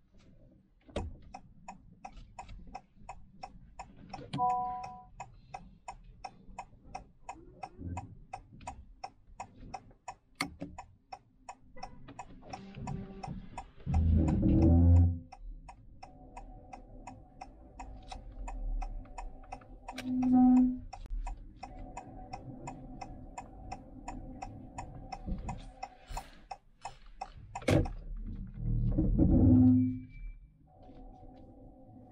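Car's turn-signal indicator ticking steadily, several clicks a second, signalling to pull up on the right. A short three-note chime sounds about four seconds in, a held tone runs through the second half, and a few louder low thuds break in.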